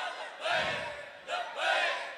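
A gathering's raised voices chanting or calling out in unison: two loud, drawn-out phrases that rise and fall in pitch, the first about half a second in and the second near the end.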